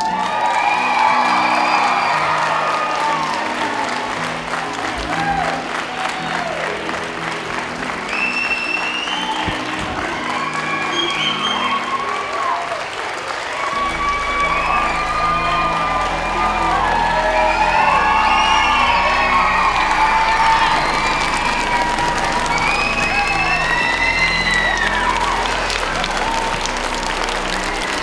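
A large crowd of children and adults cheering, screaming and applauding, with many voices rising and falling over one another. Background music plays underneath, with a deeper bass line coming in about halfway.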